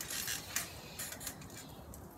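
Faint rustling and scuffing from people shifting about on a trampoline mat: a few soft brushes in the first second or so, then low background noise.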